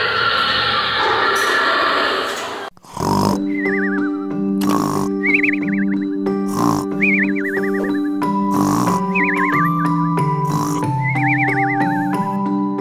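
Cartoon snoring sound effect repeating about every two seconds: a short snort, then a wavering, falling whistle, over soft background music with held notes. Before it, a dense loud noise runs for about the first three seconds and cuts off suddenly.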